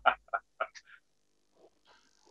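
A man laughing: a few short, breathy bursts of laughter that die away within the first second.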